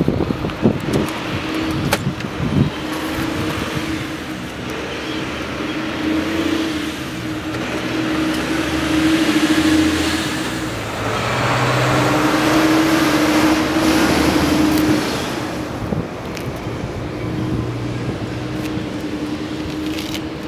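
The electric motor of a portable wheelchair/scooter lifting platform hums steadily in three long stretches with short breaks between them. A few knocks and clicks near the start come from the folded power wheelchair being handled, and a rustling, scraping noise swells in the middle as the chair is pushed into the cargo area.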